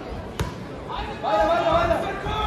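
A single sharp thud in a kickboxing ring about half a second in, then a shouting voice near the end.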